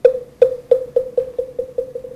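A wooden moktak (Buddhist wooden fish) struck about nine times, the strokes speeding up and growing softer in a roll, each a short hollow knock. This is the accelerating roll that leads into the chanting of a mantra.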